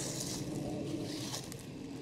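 Footsteps rustling through dry fallen leaves, quiet and uneven.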